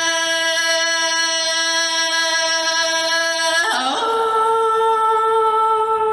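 A woman singing Hmong kwv txhiaj (sung poetry) into a microphone, unaccompanied. She holds one long steady note, then slides up to a higher held note a little under four seconds in.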